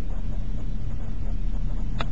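Car engine running with a steady low rumble, heard from inside the car. A single sharp click comes at the very end.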